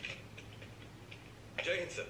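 A few faint, irregular ticks in a quiet room from the film's soundtrack, then a man's voice briefly near the end, the salute 'Jai Hind, sir'.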